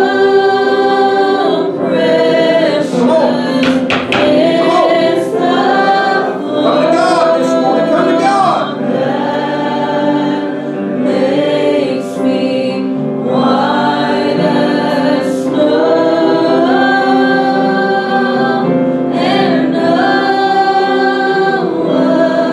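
Church congregation singing a hymn together: many voices, men and women, in slow phrases of long held notes.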